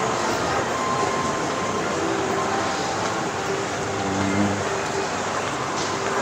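Steady shopping-mall ambience: an even hum of ventilation and crowd noise with faint distant voices.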